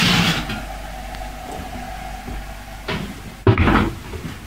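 Kitchen handling noise: a brief rustling hiss, then a faint steady hum, and a clunk near the end as a hand takes hold of a cooker's oven door handle.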